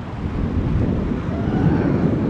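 Wind buffeting the microphone on a boat's deck, a steady low rumble that grows a little louder about half a second in, with water washing against the hull.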